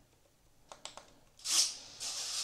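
Near silence, then a few light clicks and, about a second and a half in, a short rubbing hiss as the hand-held RC transmitter is handled.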